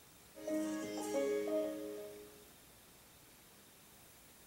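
Samsung flat-screen TV's power-on chime: a short melody of a few clear, overlapping notes from the TV's speakers. It starts about half a second in and fades out by about two and a half seconds.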